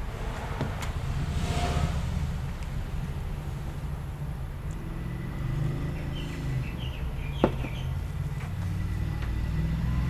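A steady low rumble of background noise, with a sharp click about seven and a half seconds in.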